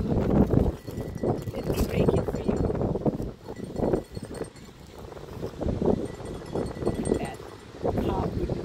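Indistinct, muffled voices, with wind buffeting the microphone at the start.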